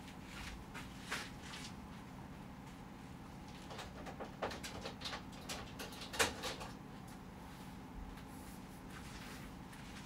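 Faint scattered clicks and light knocks of someone searching through supplies for a ruler, the sharpest about six seconds in, over a low steady hum.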